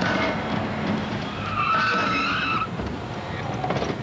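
A car driving fast, its tyres squealing for about a second near the middle.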